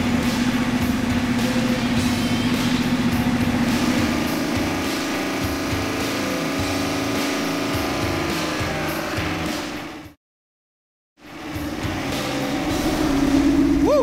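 Freshly built Chevrolet 409 V8 with dual four-barrel carburettors running on an engine dyno at a steady fast idle on its first fire-up, while its timing is checked. Its pitch rises a little about four seconds in, and the sound cuts out completely for about a second just after ten seconds before the engine is heard again.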